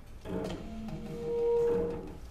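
Bowed cello and alto saxophone improvising freely. An uneven, shifting texture begins just after the start. A single held note then swells to the loudest point in the second half and fades near the end.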